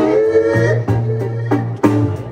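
Live jazz trio playing: an eight-string guitar carries the bass line and chords under drums, with a male jazz singer's voice. A sharp cymbal hit comes near the end.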